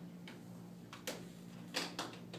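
Two short clicks about two-thirds of a second apart, the second louder, over a steady low hum.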